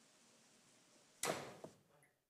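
Faint steady hiss of near room tone, broken a little past halfway by one short sudden noise that fades within half a second, with a tiny click just after.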